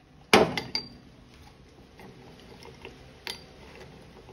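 A metal spoon clanking against a stainless steel cooking pot: one sharp, ringing clank about a third of a second in, a lighter clink just after, then faint taps and another clink near the end.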